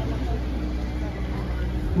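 Street background noise in a pause between words: a steady low rumble with an even hiss and a faint steady hum that stops near the end.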